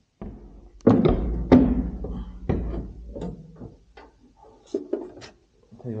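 A series of knocks, thumps and clicks from hands working on a tractor cab's trim and light wiring. The loudest come about one and one and a half seconds in, followed by smaller scattered clicks.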